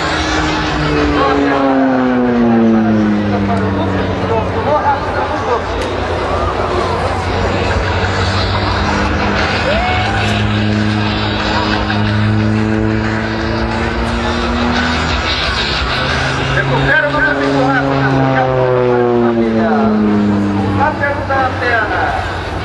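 Embraer T-27 Tucano turboprop display aircraft flying low passes overhead, the propeller-and-engine drone dropping in pitch as a plane goes by about a second in and again near the end, with a steadier drone between.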